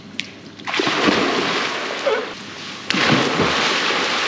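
Two people jumping into a swimming pool one after the other: a big splash just under a second in, water churning, then a second splash about two seconds later.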